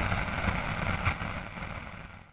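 The decaying rumble and hiss of an outro logo sting's boom sound effect, fading away toward the end, with a faint click about a second in.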